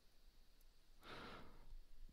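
Near silence, with one faint breath drawn in by the narrator about halfway through.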